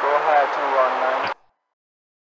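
A voice transmission over a police radio, with hiss around the voice, cutting off abruptly with a click about a second and a half in.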